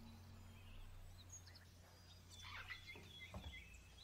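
Faint birdsong: scattered short, high chirps from small birds, with a soft knock about three seconds in.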